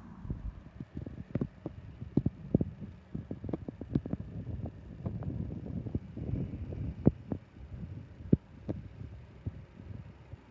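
Wind buffeting an exposed microphone: an uneven low rumble with frequent irregular thumps.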